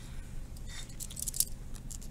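A pen scratching short strokes on notebook paper: a few light, quick scratches, with a sharp click about a second and a half in.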